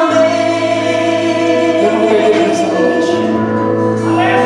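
A worship vocal group singing a gospel song in long held notes over a live band, with a steady low bass note entering just after the start.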